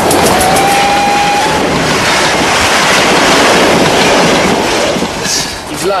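A train passing close by: a loud, steady rush of rail noise that starts abruptly, with a brief high whine near the start.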